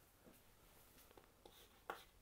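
Faint chalk taps and strokes on a blackboard, a few short scratches with the strongest tap near the end, over quiet room tone.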